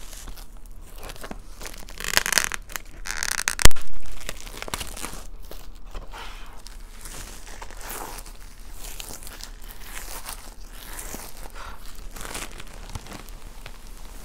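Plastic shrink wrap being torn and peeled by hand off a long cardboard box, crinkling throughout, with two louder tearing stretches about two and three and a half seconds in. A single sharp knock about three and a half seconds in is the loudest sound.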